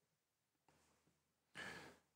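Near silence in a pause of a man's speech, ended by a short breath drawn in through the microphone near the end.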